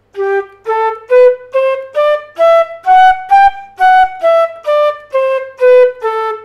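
A wind instrument playing a one-octave G major scale, each note tongued separately, about two notes a second, climbing to the top note around the middle and coming back down.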